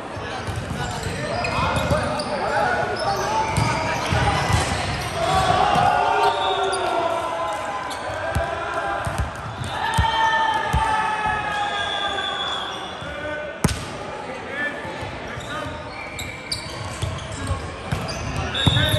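Volleyball players' voices calling and shouting across a large hall, some calls held long, with a single sharp smack of a hand hitting the volleyball about two-thirds of the way through.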